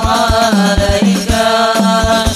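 Sholawat devotional song: a melodic singing voice over a percussion ensemble of hand-played frame drums and a large bass drum, the drum strokes keeping a steady, quick rhythm.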